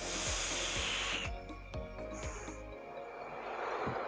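A steady hiss of air drawn through an IJOY Jupiter pod vape for just over a second, a 1.2-second puff by the device's counter. A short second hiss follows, then a softer breathy exhale of vapour near the end.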